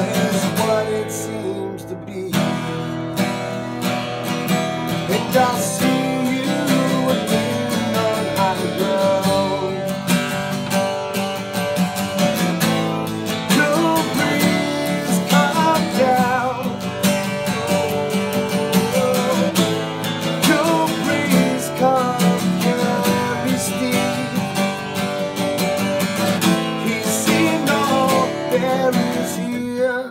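Acoustic guitar strummed steadily, playing the chords of a song.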